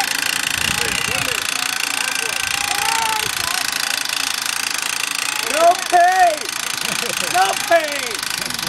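A steady mechanical rattle from the pedal-driven winch of a human-powered catapult as it pulls the throwing arm down, with people talking over it.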